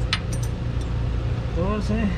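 A steady low mechanical hum with a single sharp click just after the start; a brief voice comes in near the end.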